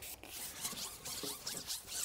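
Long carbon fishing pole sliding through the hands as it is fed hand over hand: a series of quick, high-pitched rubbing scrapes.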